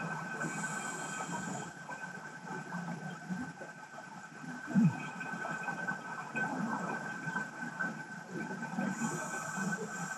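Underwater ambient noise picked up through a static camera's housing on the seabed: a steady, uneven low rumble with a thin, steady whine above it. Two short hisses, one near the start and one near the end, and a single dull thump about five seconds in.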